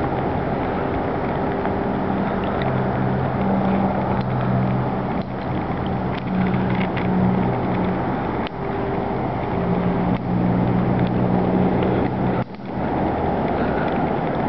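A steady, engine-like mechanical hum over constant background noise. Its low droning tones fade in and out, dropping away about halfway through, returning, and stopping shortly before the end.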